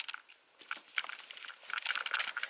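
Rustling and light clicking from things being handled, sparse at first and thicker near the end.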